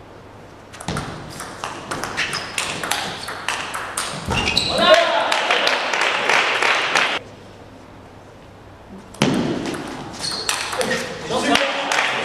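Table tennis ball clicking sharply off bats and table in a rally, starting about a second in. Around four seconds in come a shout and crowd noise from spectators, lasting until about seven seconds, and another burst of clicks and voices follows later.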